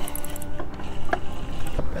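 A few sharp clicks and knocks from fishing gear being handled on a boat as a long-handled landing net is grabbed to land a hooked fish, over a steady hum.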